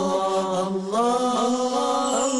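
Chanted vocal music as a theme: one singing voice holds long, drawn-out notes and moves to a new note about a second in, with no drums to be heard.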